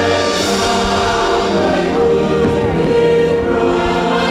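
Choir singing long held notes over instrumental accompaniment.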